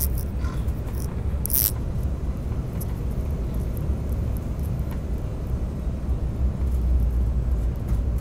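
Steady low rumble of airliner cabin noise on final approach, from the engines and the air rushing past the fuselage, with a brief hiss about one and a half seconds in.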